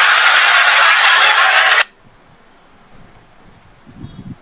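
A loud, steady hiss of noise that cuts off abruptly about two seconds in, followed by a faint low rumble.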